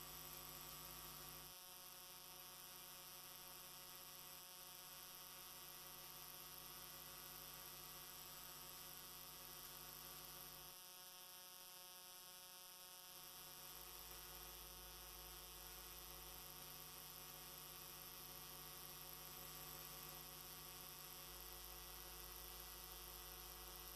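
Near silence with a faint, steady electrical mains hum made up of many fixed tones; its lowest part drops away for a few seconds twice.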